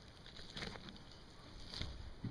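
Faint, soft sounds of a knife cutting through the tissue around a turkey's hip joint as the leg is taken off the carcass, with a couple of brief soft noises near the middle and the end.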